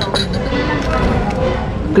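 Background voices and faint music, with a short crunch near the start as someone bites into a crispy fried chicken wing.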